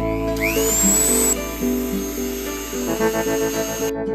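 Background music, with a Dremel rotary tool's high whine over it: the tool spins up with a fast rising whine in the first second, runs at a steady high pitch, and cuts off near the end.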